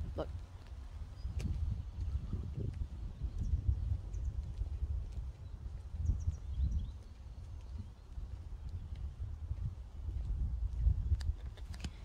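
Wind buffeting a phone's microphone: a low, gusting rumble that swells and fades over several seconds, with a few faint high chirps.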